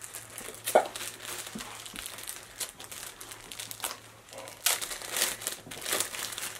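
Packaging crinkling and rustling in irregular bursts as hands rummage through a subscription box, busiest near the end.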